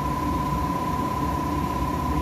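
Steady background hum and hiss with a constant high-pitched whine over a low rumble, unchanging throughout.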